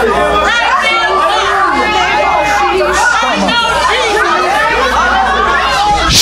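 A church congregation praying and worshipping aloud all at once: many overlapping voices, loud and steady, in a reverberant hall.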